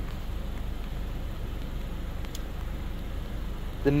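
A 2016 Acura TLX idling with a steady low rumble and an even background hum.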